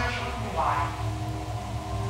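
Faint, muffled conversational speech picked up by a hidden camera, over a steady low hum.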